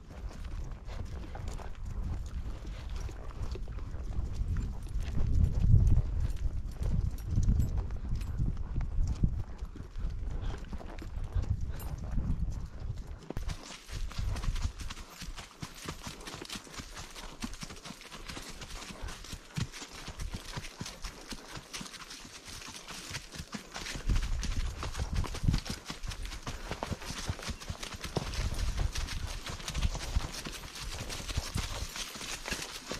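Horses walking, their hooves clip-clopping on a grassy trail, heard from the saddle. A low rumble runs through the first half, and a steady hiss comes in after about thirteen seconds.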